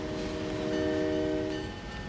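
Train horn sounding one steady multi-note chord, which cuts off near the end.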